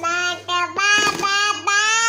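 An eleven-month-old baby vocalizing in long, sing-song held tones, three drawn-out notes one after another.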